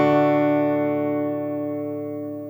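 A final chord on an acoustic guitar, played through a NUX Stageman II AC-60 acoustic amplifier with its analog delay effect switched on, ringing out and fading steadily.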